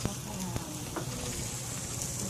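Food sizzling on a grill: a steady, even hiss, with one sharp click right at the start.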